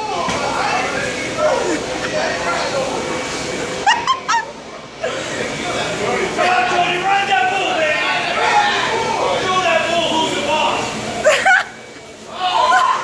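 Several people talking over one another, with two short, high, rising yelps, one about four seconds in and one near the end.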